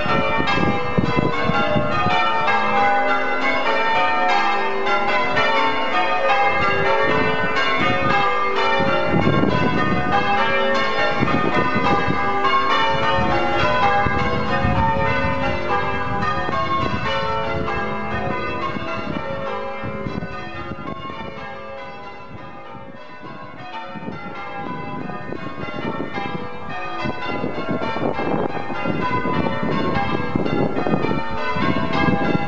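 Church bells change ringing a peal of Doubles on a ring of six with a 10½ cwt tenor, heard from outside the tower: a continuous, evenly paced stream of bell strokes whose order keeps changing. The ringing drops in level about two-thirds of the way through, then comes back up.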